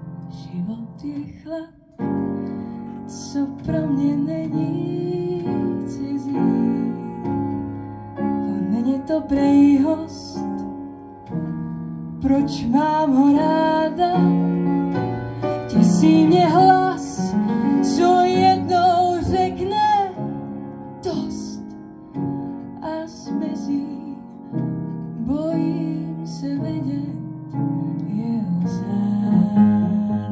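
A trained female voice sings with vibrato, accompanied by an upright piano.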